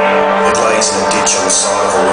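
Live rock band playing: a sustained droning chord held over the whole stretch, with several short hissy crashes on top.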